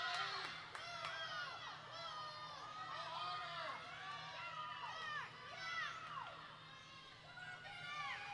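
Spectators cheering and shouting for swimmers racing, many high-pitched voices overlapping in rising and falling calls.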